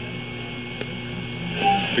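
Steady tape and radio hiss with a low hum and a thin high whine, in the gap between a radio commercial and the return of the live broadcast. The background rises a little near the end.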